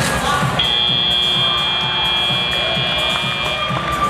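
Arena's end-of-match buzzer, a steady high tone that starts about half a second in and lasts about three seconds, over background music and crowd noise. It signals the end of the match.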